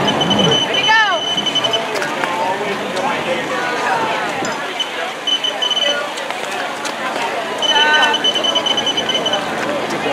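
Runs of rapid high-pitched electronic beeping, the finish-line chip-timing system registering runners as they cross, three times: near the start, around the middle and near the end. Under it, spectators' voices and cheers.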